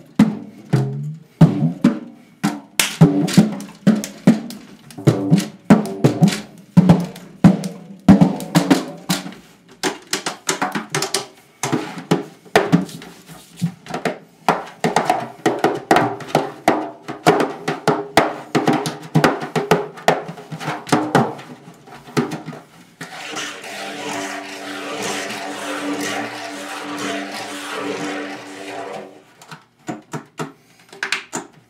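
Free-improvised hand drumming on a single drum head: dense, irregular finger and palm strikes whose pitch keeps shifting as the head is pressed. About 23 seconds in the strikes give way to a continuous droning, hissy sound for about six seconds, which stops shortly before the end.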